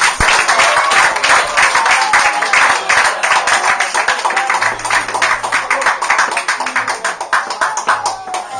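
Small audience applauding after a song: dense hand clapping that thins out and fades near the end, with a few voices under it.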